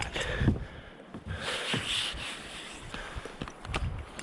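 Footsteps on paving and rustling handling noise close to the microphone, with scattered soft knocks and a short rush of hiss about halfway through.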